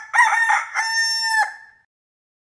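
A single rooster crow: a few short rising notes, then a long held note that cuts off about one and a half seconds in.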